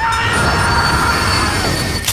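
Train making a shrill squeal over a low rumble. Several steady high pitches hold for about a second and a half, then bend down in pitch and fade near the end.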